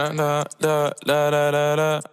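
Background music: an unaccompanied male voice singing held notes in three short phrases, with no beat underneath.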